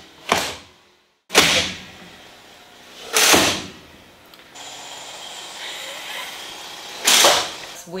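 Bus side windows being pushed shut from outside: a sharp bang about a second in, then rushing sliding sounds around three seconds in and again near the end.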